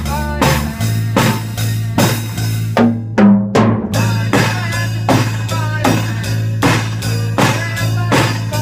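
Electric bass and a drum kit playing together live, drum strikes about twice a second over held bass notes. About three seconds in the drums stop briefly while two falling bass notes sound, then the beat comes back.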